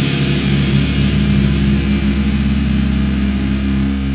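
Grindcore band's distorted electric guitar and bass holding one chord that rings out as the song ends, with the drums and vocals stopped.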